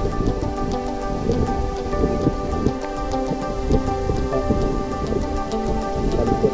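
Background music with long held tones over a dense, irregular crackling and clicking of water picked up by a submerged camera.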